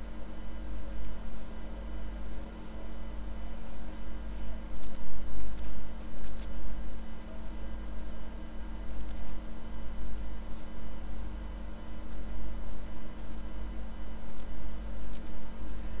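Steady low electrical mains hum with a faint buzz of higher steady tones. Now and then a faint, brief scratch comes through: a watercolour brush stroking the paper.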